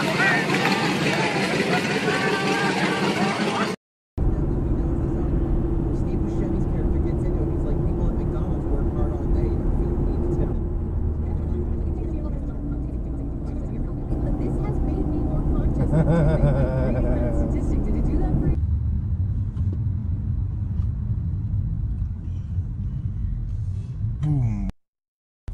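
Steady low road and engine rumble of a car driving on a highway, heard from inside the cabin through a dashcam. The first few seconds are different: voices over a tyre-smoking car burnout, which cut off abruptly.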